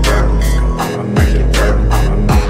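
Hip-hop beat: steady drum hits over a deep bass whose notes slide down in pitch. The bass drops out for a moment about a second in, then comes back.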